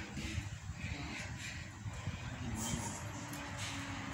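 Steady low rumble of outdoor background noise, with faint distant voices.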